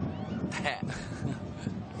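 Thai-language football commentary: a man's voice speaking briefly over the steady background noise of the stadium crowd.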